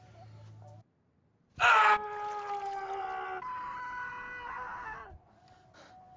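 A young man's voice screaming in shock, one long scream starting about one and a half seconds in. It is loudest at the onset, sags slightly in pitch, then breaks to a different pitch partway through and stops after about three and a half seconds.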